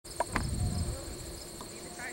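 Steady high-pitched insect chorus of cricket-like chirring. In the first half-second there are two sharp clicks, with a low rumble that fades out by about a second in.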